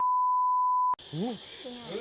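A steady, pure electronic test-tone beep, the kind played with TV colour bars, held for just under a second and cutting off suddenly.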